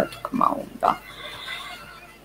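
A person's voice in a few brief sounds during the first second, then a quieter stretch.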